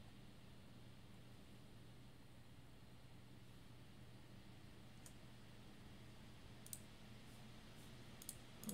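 Near silence with a faint steady hum, broken by a few faint computer mouse clicks: one about five seconds in, then two near the end.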